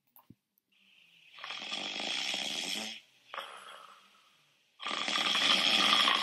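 Snoring sound effect: two long snores, one about a second in and one near the end, with a shorter, fainter one between.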